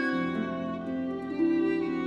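A violin playing slow, held notes in a classical chamber piece.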